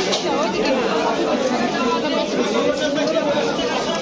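Crowd chatter at a fish market: many vendors and shoppers talking at once, their voices overlapping at a steady level.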